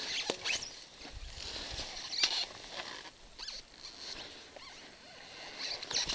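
Footsteps rustling and scuffing through dry leaf litter on a forest floor, with irregular small snaps. Louder near the start and the end, quieter in the middle.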